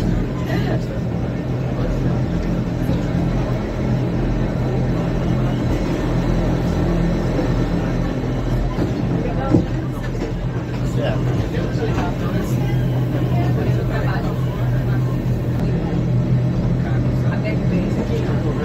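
Electric rack-railway train running steadily downhill at about 15 km/h, heard from the cab: a constant low hum from the drive over rumbling wheels on the track, with a single sharp knock about halfway through.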